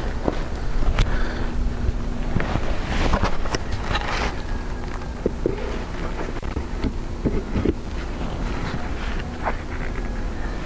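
Wind buffeting the microphone over a steady hum of honeybees from an open hive, with a few sharp clicks and knocks.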